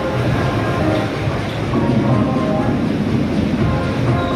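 Electric bumper cars driving across the arena floor, making a steady, loud rolling rumble.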